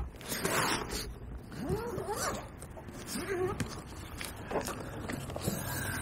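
Zipper on a soft backpack compartment being pulled open, a long scraping run in the first second followed by a few shorter tugs. A few faint sounds that slide up and down in pitch come in a couple of seconds in.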